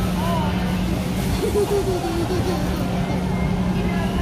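Indistinct crowd chatter in a large, busy food hall over a steady low hum, with a nearer voice briefly audible around the middle.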